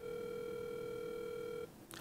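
Telephone ringback tone on an outgoing call: one steady ring of about a second and a half that cuts off, as the call is answered.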